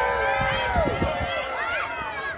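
Wrestling crowd shouting and calling out at ringside, several voices overlapping, some of them high-pitched. The shouting tails off toward the end.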